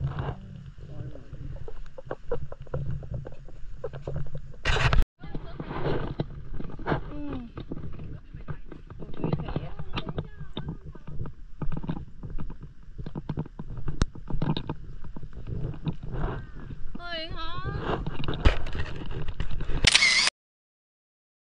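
Indistinct voices over a steady low rumble, with a brief dropout about five seconds in.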